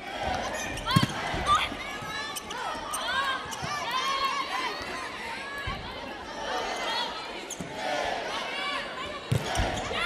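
Indoor volleyball rally on a hardwood court: sharp smacks of the ball being served and struck, the loudest about a second in and others near the middle and the end, amid sneaker squeaks and a steady crowd din echoing in a large arena.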